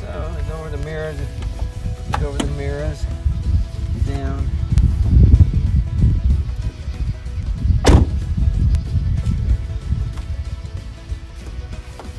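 Low wind rumble on the microphone under faint background music, with one sharp knock about eight seconds in while a mesh net is worked over a car door's window frame.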